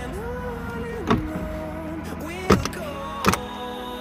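Glovebox of a Chevrolet Onix being pushed back into place, with three sharp plastic knocks as it snaps home, over background music.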